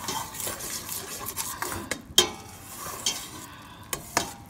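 A spoon stirring and scraping diced onions, bell peppers and celery sautéing in melted butter in a stainless steel pot, with a light sizzle underneath. A few sharp knocks of the spoon against the pot, the loudest about two seconds in.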